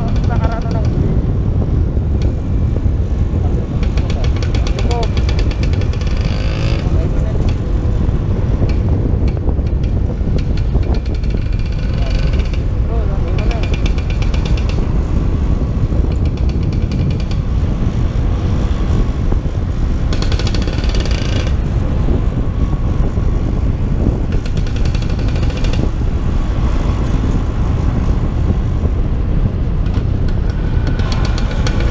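Heavy wind buffeting on the helmet-mounted microphone while riding a Vespa scooter, with the scooter engines running steadily underneath.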